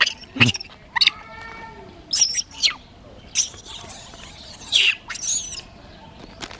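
Macaques giving short, high-pitched squeaks and chirps, about seven in a few seconds, one of them a longer clear-pitched squeal about a second in.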